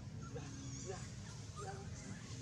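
A few short, squeaky animal calls scattered through the two seconds, more of them near the end, over a steady low background rumble.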